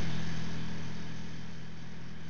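A steady low mechanical hum, slowly fading.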